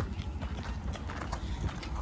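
Footsteps on loose gravel: a string of soft, irregular clicks over a low, steady outdoor rumble.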